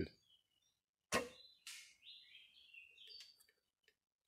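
An arrow shot from a traditional wooden bow: a single sharp snap of the bowstring about a second in, then a second, softer sound about half a second later. Birds chirp faintly afterwards.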